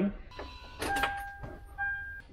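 Electronic warning chime from a 2007 Toyota 4Runner with its driver's door open, sounding as steady beeping tones that start and stop, with a brief clatter about a second in.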